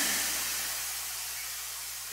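Room tone through a stage microphone system: a steady hiss with a low hum underneath, slowly fading.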